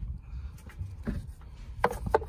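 Light knocks and rubbing from the engine's oil filler cap being handled and set onto the filler neck, with a sharper click near the end, over a low rumble.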